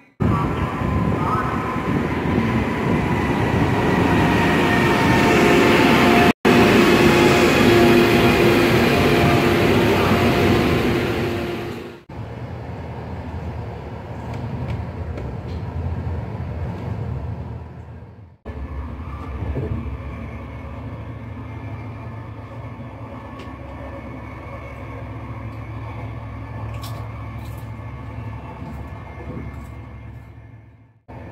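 Electric-locomotive-hauled VR intercity train pulling into the platform: a loud rush of wheel and motor noise with several whining tones that sink slowly as it slows, cut off suddenly about twelve seconds in. After that, the inside of the moving train as it leaves the station: a quieter steady rumble and hum.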